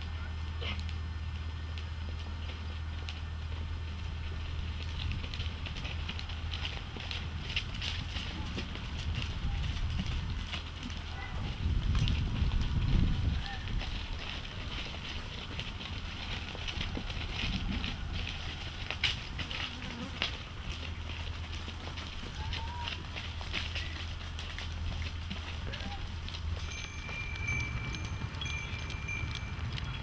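Goats walking over dry, stony ground: scattered hoof steps and scrapes over a steady low hum, with a louder low rumble about twelve seconds in and a thin high ringing tone near the end.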